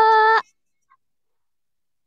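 A high voice drawing out the last syllable of a spoken exclamation on one steady pitch, cut off abruptly about half a second in.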